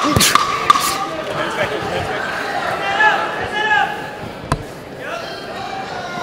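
A few sharp thuds of boxing gloves landing, two close together near the start and one more past the middle, over a steady bed of arena crowd voices and shouts.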